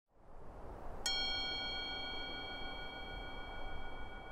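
Intro music: a single bell-like chime struck about a second in, ringing on with slowly fading overtones over a soft low drone that fades in at the start.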